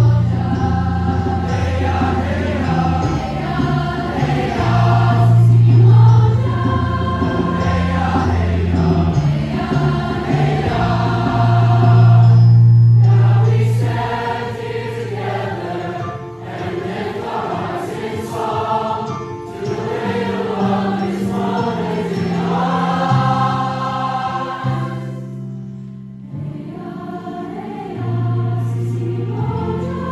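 A large mixed-voice combined choir singing in full harmony, with sustained low notes beneath. It grows softer around the middle, dips briefly near the end, then swells again.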